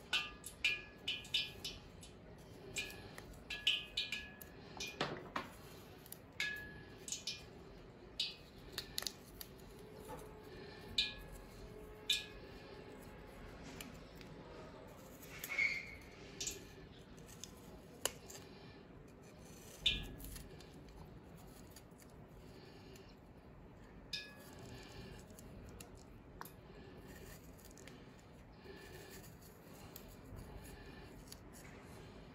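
Faint, crisp snicks of a small food-carving knife slicing thin petals into a piece of firm raw vegetable, coming irregularly, a few at a time with short pauses between.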